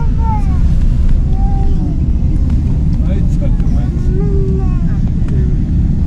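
Car cabin noise while driving: a steady low road-and-engine rumble, with several short high-pitched rising-and-falling vocal sounds over it.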